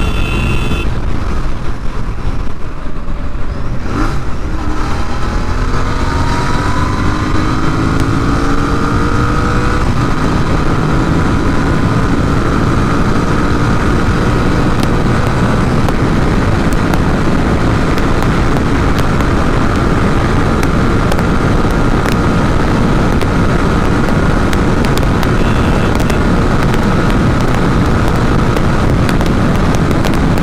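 Royal Enfield Interceptor 650's parallel-twin engine at full throttle. After a gear change about four seconds in, its pitch rises steeply, then climbs only slowly as the bike nears its top speed of about 150 km/h. Heavy wind noise on the microphone runs underneath.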